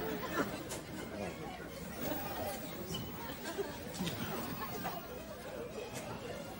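Indistinct chatter of several people talking at low level in the background, with no clear words.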